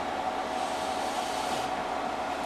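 Steady fan-like whir and hiss from bench electronics running, with a faint steady tone underneath and no change in level.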